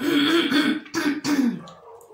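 A person clearing their throat in three strong, rasping bursts over about a second and a half, the last one falling in pitch.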